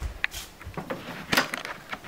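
Handling noise of a phone camera being moved and covered: a few scattered knocks and rubs, the loudest just over a second in.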